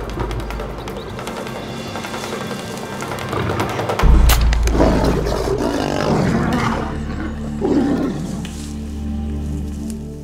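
Tense background music, broken about four seconds in by a sharp crack as the dart rifle fires, with a deep boom under it. A lion growls and roars for a few seconds after.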